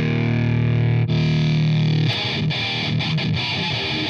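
Distorted electric guitar played through a Digitech DF-7 Distortion Factory pedal: a held chord, re-struck about a second in and held again, then faster picked riffing from about two seconds in.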